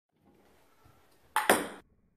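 Two sharp table-tennis clicks about a sixth of a second apart, a little after the middle, the second louder, each ringing briefly in the room.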